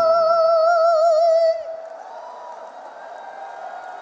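A woman sings a long held final note with vibrato, ending about a second and a half in, followed by the audience cheering and applauding.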